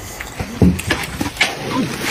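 Several short, low animal-like vocal calls that bend in pitch.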